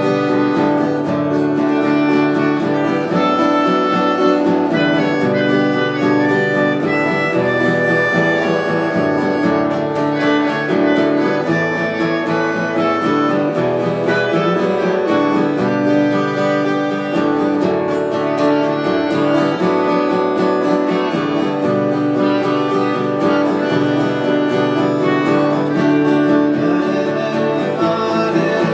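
Live acoustic music: a steel-string acoustic guitar played under a melody of long held notes.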